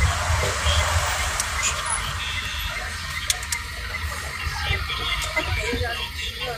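Cabin noise inside a car driving in city traffic: a low engine and road rumble, strongest at the start and easing off after about a second, with a few light clicks.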